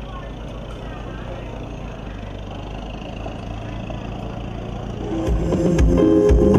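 Low outdoor background noise with faint voices and a low rumble. About five seconds in, loud music with a heavy drum beat and bass starts up from a mobile sound-system truck's speaker stacks.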